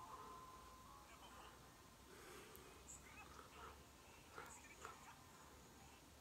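Near silence: room tone with a few faint, scattered small sounds.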